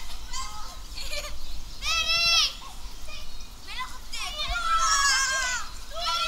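A group of children shouting and shrieking at play, with a long high shriek about two seconds in and several overlapping shouts around five seconds.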